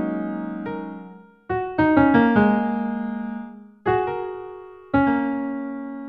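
Piano-like software keyboard instrument played from a mini MIDI keyboard: a held chord rings and fades, a short run of notes follows about a second and a half in, then two more chords are struck near four and five seconds and left to die away.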